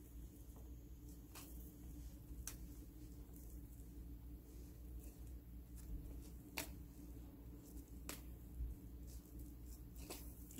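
Hands tearing blanched, squeezed-out butterbur leaves and stalks into strips: faint, soft, wet handling with about four small clicks, over a low steady hum.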